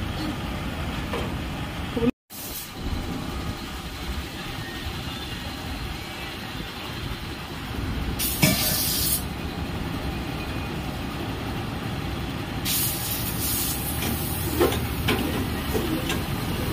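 Workshop press working a Mahindra Jeeto suspension bush: a steady mechanical running noise with two bursts of air hissing, one about eight seconds in lasting about a second, and a longer one starting about thirteen seconds in.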